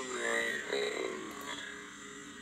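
A pause in a man's talk: a faint pitched sound of his voice trails off over about the first second, leaving quiet room tone.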